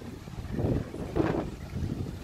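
Wind buffeting the microphone in a rough, fluttering rumble, with two louder gusts about half a second and just over a second in.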